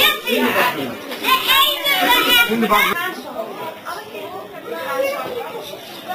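A classroom full of young children chattering and calling out at once, a busy hubbub of high voices that dies down after about three seconds.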